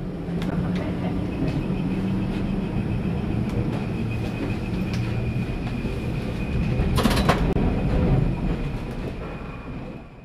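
Vintage electric tram running along the track, heard from the driver's cab: a steady rumble of wheels and running gear with a faint steady whine and scattered clicks. Two sharper knocks come about seven seconds in, and the sound fades out near the end.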